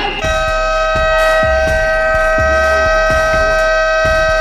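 Basketball game buzzer sounding one long, steady, high blast of about four and a half seconds that cuts off sharply, marking the game clock running out.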